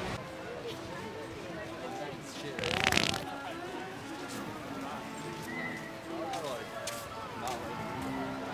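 Voices of people talking, with one loud, short rushing burst of noise about three seconds in.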